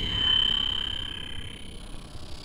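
Electronic synthesizer sound: a high, steady tone that swells in the first half-second and then fades away over the next second or so. A low rumble drops out as the tone begins.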